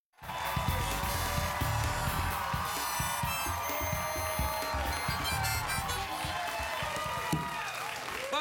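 Harmonica playing over backing music with a steady low beat, starting suddenly as the audio comes in.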